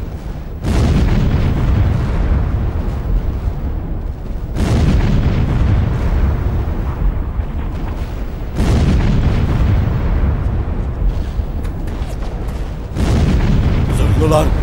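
Artillery shell explosions in a film soundtrack: four heavy booms about four seconds apart, each trailing off in a long low rumble.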